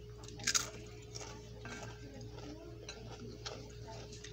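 Close-up chewing of a ham-and-cheese sandwich on a crusty bread roll, with one loud crunch about half a second in and smaller clicks of chewing after it. A steady low hum runs underneath.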